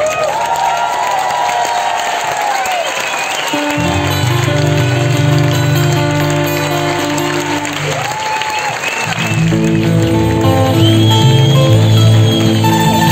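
Live folk-rock band playing: acoustic guitars, upright bass, drums and keyboard. The bass drops out for the first few seconds under a long held high note, then the full band comes back in about four seconds in.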